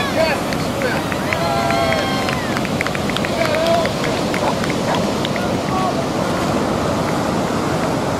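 Ocean surf breaking and washing at the shoreline, with wind on the microphone, under people calling out and cheering in long held shouts. A scatter of sharp clicks sounds about two to four seconds in.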